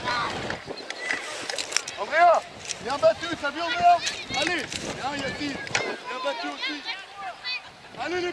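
Children's high voices shouting and calling out across a football pitch, several short calls overlapping and rising and falling in pitch, with a few sharp knocks in between.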